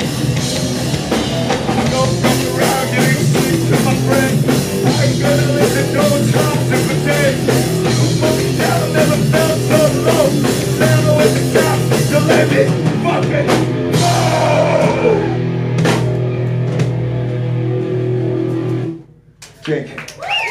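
Live rock band playing loud electric guitar, bass guitar and drum kit. About two-thirds through, the drumming thins to a few hits and chords ring on, then the song stops suddenly near the end.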